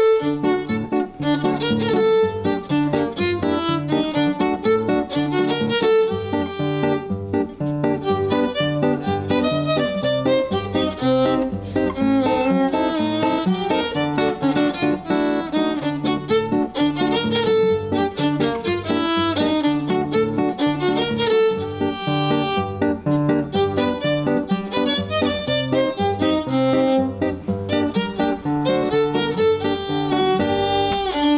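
Violin and classical guitar playing an instrumental duet with a Spanish flavour: the violin carries the melody over the guitar's plucked accompaniment.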